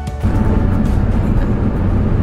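Music cuts off a fraction of a second in, giving way to the steady road and engine noise heard inside the cab of a Dodge Ram 3500 pickup with a turbo Cummins diesel, cruising on the highway, with a low steady hum under it.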